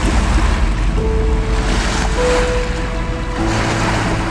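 Small waves splashing and washing against rocks at a lake shore, a steady rushing wash, with background cinematic music holding long notes over it.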